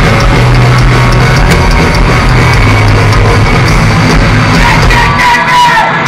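Live melodic hardcore punk band playing at full volume: distorted electric guitars, bass and drums, loud and dense, with a short break and a sliding guitar note near the end.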